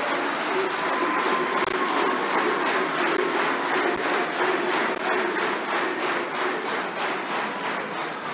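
Audience applauding: a steady round of clapping from a roomful of guests that eases slightly near the end.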